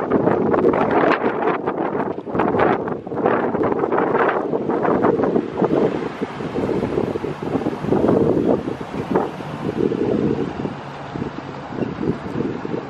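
Gusty wind buffeting the microphone, rising and falling in irregular gusts.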